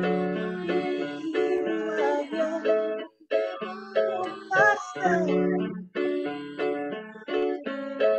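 Portable electronic keyboard played with both hands: a slow chord exercise, block chords struck and held over a low bass note. The playing breaks off briefly about three seconds and six seconds in.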